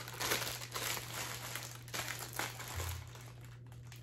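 Plastic wrapping of bulletin-board border packs crinkling as they are handled, in irregular rustles that die down over the last second or so.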